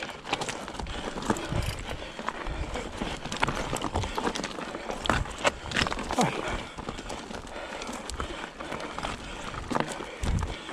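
Mountain bike riding over a rocky trail: tyres crunching over loose stones and the bike rattling, with frequent sharp knocks as the wheels strike rocks.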